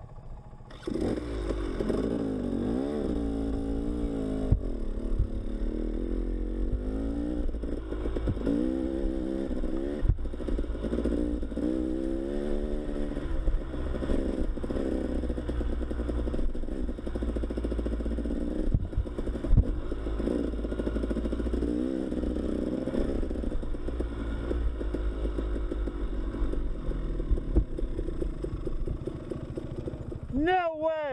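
Enduro dirt bike engine revving up about a second in and then running along a rough dirt trail, its pitch rising and falling with the throttle. Scattered clattering from the bike over the rough track.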